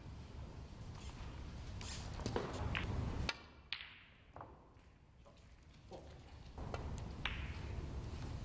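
Several sharp, separate clicks of snooker balls, cue tip on cue ball and ball on ball, over the low hum of a quiet arena. The hum cuts off abruptly a little past three seconds and returns near the end.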